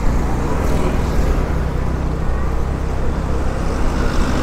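Steady street traffic noise: a low rumble of passing car and motorbike engines and tyres on the road.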